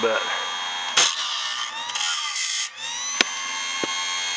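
Homemade automatic bandsaw blade sharpener running: its grinding-wheel motor whines steadily while the cam feeds a Wood-Mizer silver tip blade. About a second in, a sharp click is followed by a harsh rasp of about a second and a half as the wheel grinds a tooth, and the whine rises back in pitch. Further sharp clicks come around three seconds in.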